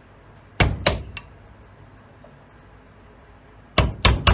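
Small hammer striking a small chisel against a knife's resin handle clamped in a metal bench vise, chipping the handle off: two sharp taps and a lighter one about half a second in, then another sharp tap near the end.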